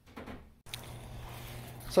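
Faint background noise, then an abrupt cut about half a second in to steady outdoor ambience: an even hiss with a low hum beneath it.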